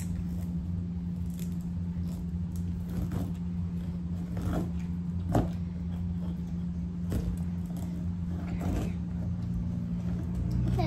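Kitchen knife sawing through the thick spiky rind of a large, not-yet-ripe jackfruit: a few scattered crunching cuts, the sharpest about five seconds in, over a steady low hum.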